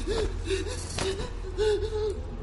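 A young woman whimpering in short, quick, frightened gasps, over a low steady hum.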